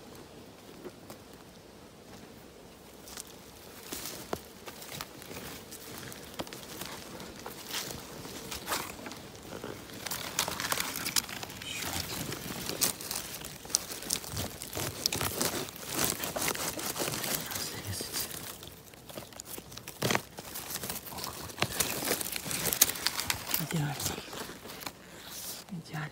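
Dry leaves, twigs and moss on the forest floor crackling and rustling in irregular clicks, sparse at first and much busier from about ten seconds in, as feet and hands move through the undergrowth.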